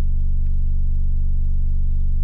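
Loudspeaker playing a steady, very low bass tone near 24 Hz, at the bottom of the hearing range, heard as a constant deep hum with a stack of overtones.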